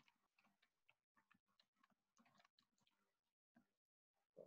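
Near silence, with only very faint scattered ticks.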